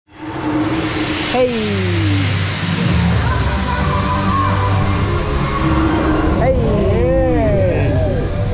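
Wind rushing over the microphone as the S&S swing ride starts swinging, over a steady low hum, with a rider calling out "Ei! Ei!" about a second and a half in. The wind noise stops suddenly near the end, where more rising-and-falling cries follow.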